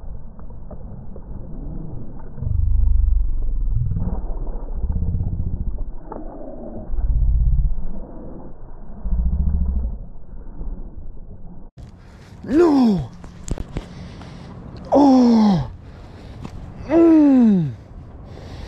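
A man groaning in dismay after a lost fish: four long moans, each falling in pitch, in the second half. Before them, muffled low rumbling bursts on the microphone.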